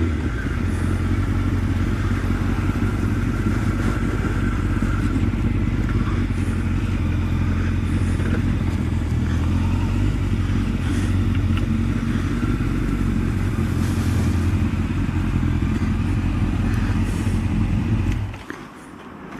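Honda CB1100SF X-Eleven's inline-four engine running steadily at low speed, picked up by a helmet camera.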